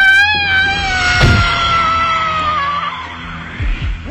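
One long wailing voice-like cry that wavers at first, then slowly falls in pitch for about three seconds. A short low thud comes about a second in.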